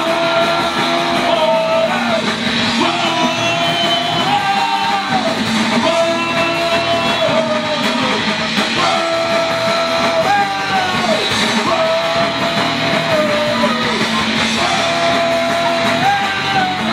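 Live rock band playing loud: electric guitars, drums and a lead vocal sung into a microphone, with a melodic phrase that repeats about every two seconds.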